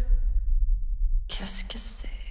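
Speech: a man speaking in a low, whispery voice, with a pause between two short lines over a steady low rumble.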